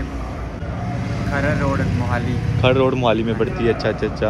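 A motor vehicle's low engine and road rumble, swelling through the middle as it passes, under people talking.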